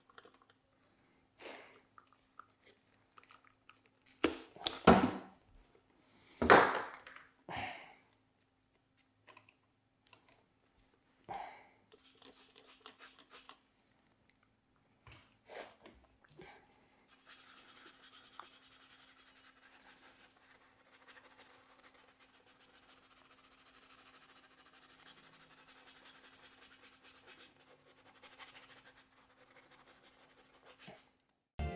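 Wheel cleaner sprayed from a trigger bottle onto a dirty wheel in several short, separate squirts, the loudest a few seconds in. Then a soft detailing brush scrubs the wet, foaming wheel surface with a steady rasp for the last dozen seconds.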